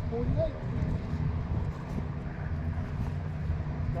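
Steady low rumble of a distant mower's engine running.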